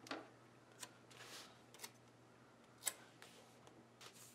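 Near silence with a few faint, sharp clicks, the loudest about three seconds in, and a soft rustle: paper sticker sheets being handled on a planner.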